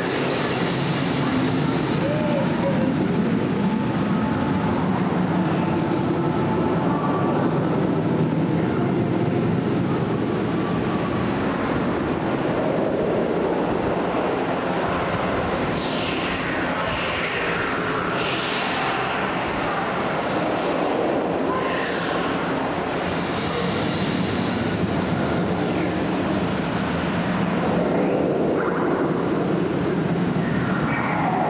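Dark-ride vehicle and effects soundtrack: a continuous rumbling whoosh with a low hum, and several falling swooshes from about halfway through.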